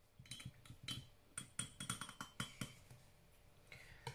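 A paintbrush rinsed in a glass water jar, clinking against the glass about a dozen times with a light ring, stopping a little before three seconds in.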